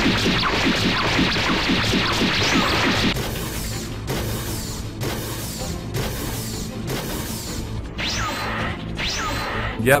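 Anime fight sound effects over background music. A rapid flurry of punches and blows fills the first three seconds, then come slower, separate hits, and two swooshes near the end.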